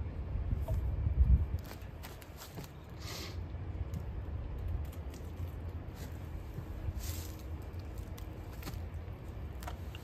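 Wind buffeting the microphone, a low rumble that is strongest in the first second and a half, with a few faint clicks and two brief rustles as a tin can is handled.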